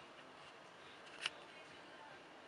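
Quiet room tone with a faint steady hiss, broken by one short sharp click about a second and a quarter in.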